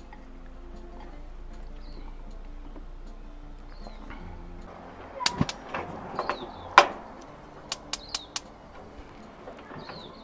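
A few knocks, then a quick run of five sharp clicks from a gas grill's igniter as the burner is lit, with small birds chirping in the background.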